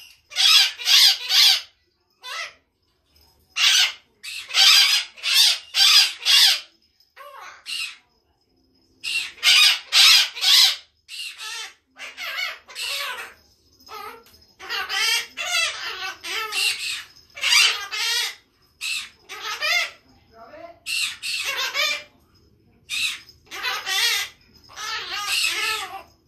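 Pet green parrot squawking and chattering in rapid runs of short, harsh calls, pausing for a second or two between groups.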